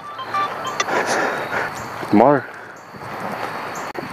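Rustling handling noise and wind on a phone's microphone as it is carried, with one short vocal sound, a single rise-and-fall syllable, about two seconds in.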